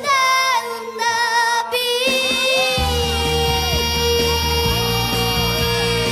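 A child's voice singing a Korean trot song over band accompaniment. About two seconds in, one long steady note is held while a bass line comes in underneath.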